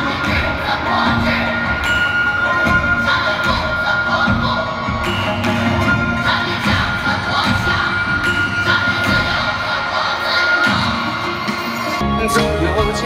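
Stadium concert crowd cheering and screaming over the band's instrumental break, with a long held high note through most of it over a steady low beat.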